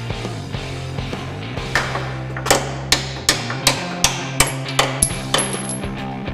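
A hammer striking steel suspension parts on a truck's front end: a run of about ten sharp, ringing blows, roughly two or three a second, starting about two seconds in. Rock music with guitar plays throughout.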